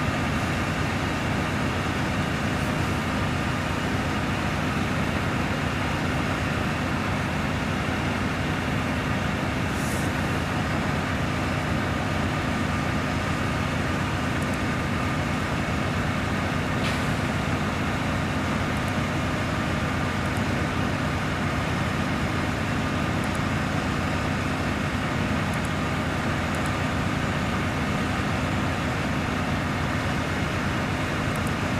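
Large truck crane's diesel engine running steadily at a constant speed, a low even drone.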